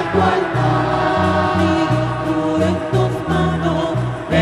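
A church choir singing a hymn with instrumental accompaniment, the bass line stepping from note to note a few times a second.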